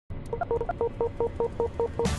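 A quick run of short, evenly spaced electronic beeps, about five a second, over a low hum.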